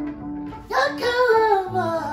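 Music: a high singing voice comes in about two-thirds of a second in, over held electronic keyboard notes.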